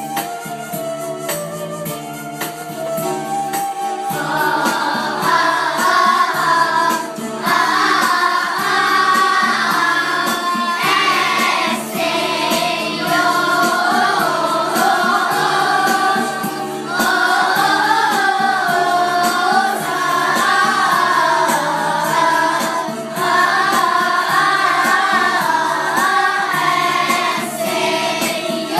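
A group of children singing together to an electronic keyboard accompaniment. The keyboard plays alone at first, and the children's voices come in about four seconds in, singing in phrases with short breaths between them.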